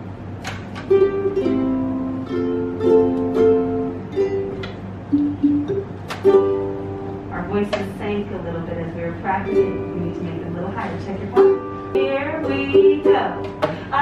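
Ukulele strummed a few times, its chords left ringing between strums.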